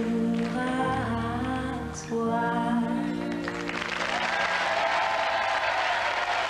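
End of a French pop song sung live: a woman's voice holds the final notes over the band. About three and a half seconds in, audience applause breaks out and carries on.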